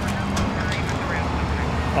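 Steady low rumble of city street traffic, with a faint voice in the background.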